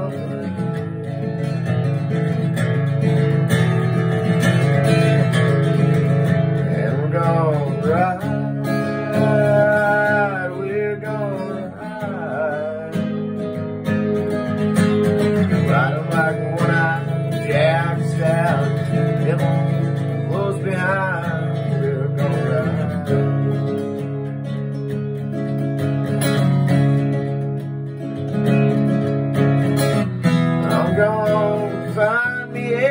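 Acoustic guitar strummed steadily through a country song, with a melody line that bends and wavers over it at several points.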